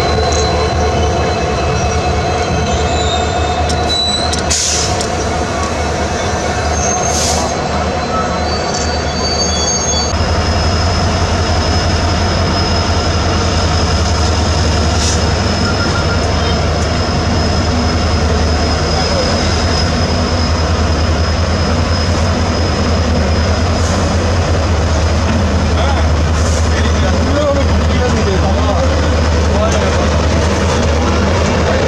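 Passenger train running along the line, heard from on board: a steady rumble of wheels on rail with thin high wheel squeal at times. The low rumble grows louder about ten seconds in.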